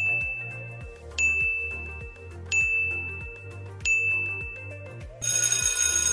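Countdown timer chimes, a high tone repeating about every second and a half over background music, then a bell-like alarm ringing from about five seconds in as the time to answer runs out.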